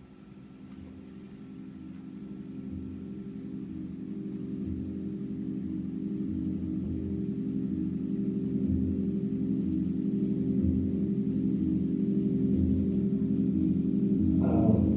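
A low, sustained musical drone of several steady tones, swelling gradually louder throughout, with a slow uneven throb underneath.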